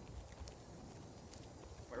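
Faint footsteps of two people walking on asphalt pavement, a few soft scuffs and light clicks.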